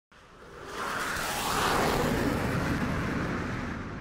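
A rushing whoosh that swells up over about a second and then slowly fades, dropping in pitch as it goes, like an aircraft flying past, used as the intro sound effect.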